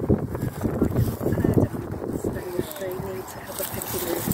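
Wind buffeting the microphone in irregular low rumbles, with faint, indistinct talk.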